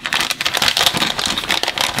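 Clear plastic zip-top bag being pulled open and handled, its thin plastic crinkling continuously.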